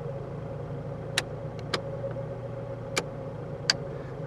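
Fiat Cinquecento's small petrol engine running steadily, heard from inside the cabin, with four short sharp clicks of the dashboard light switches at uneven spacing.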